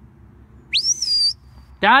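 A handler's whistle command to a herding sheepdog: one loud, sharp note that slides quickly upward and then holds high for about half a second.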